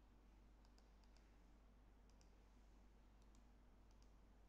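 Near silence with a steady low hum and a few faint computer mouse clicks scattered through it.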